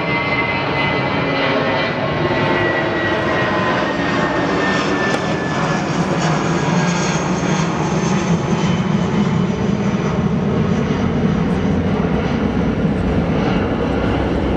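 Jet airliner passing overhead: a loud, steady rumble with a thin whine that slowly falls in pitch.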